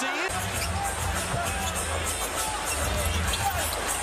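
Basketball game broadcast sound: music with a steady low bass comes in just after the start, with a basketball bouncing on the court and faint commentary over it.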